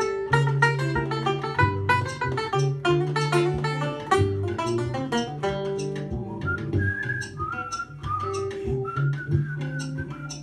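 Banjo picked in a quick, steady run of notes. About six and a half seconds in, a whistled melody comes in over it while the picking thins out.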